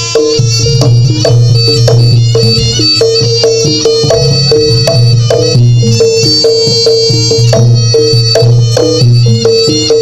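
Live East Javanese jaranan gamelan music, played loud: a high melody line over repeated drum strokes and sustained gong tones.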